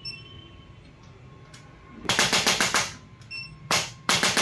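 Handheld electric chiropractic adjusting instrument firing a rapid series of clicking thrusts on the upper back, about ten a second for just under a second, then a shorter burst near the end.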